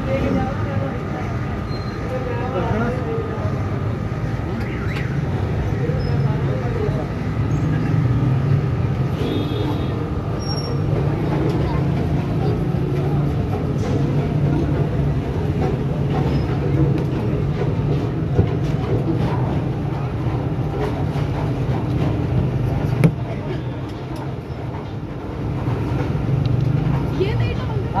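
Busy street-stall ambience: a steady low hum with indistinct background voices and occasional light clatter, and a sharp knock about 23 seconds in.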